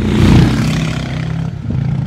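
Harley-Davidson X440's single-cylinder engine as the motorcycle rides past close by: a loud rush about a quarter-second in, then a steady engine note that eases off slightly.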